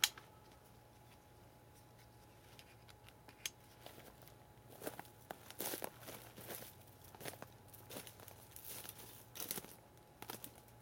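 A plastic strap buckle clicks shut once, then footsteps crunch through dry grass, leaf litter and scrub, with twigs and leaves scraping against the backpack and clothing; the steps begin about four seconds in and come irregularly.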